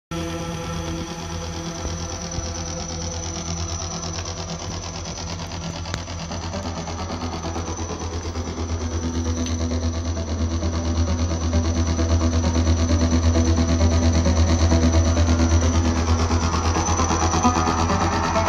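Recorded music with heavy bass and a fast, steady pulsing beat, played through Klipsch Forte III loudspeakers driven by a Yaqin MC-100C valve amplifier. It grows louder from about eight seconds in.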